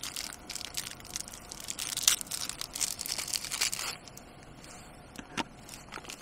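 Foil wrapper of a ration cereal bar being torn open and crinkled by hand, a dense crackling that lasts about four seconds before it quiets, with one more click near the end.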